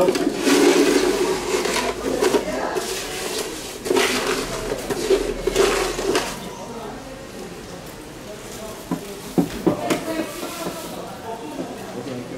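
Aquarium gravel being poured and spread by hand into a tank's substrate: a dense rattling pour for about the first six seconds, then quieter, with a few sharp clicks of stones about three-quarters of the way in.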